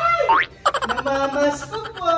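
A voice making wordless, pitched vocal sounds, with a quick rising glide about half a second in.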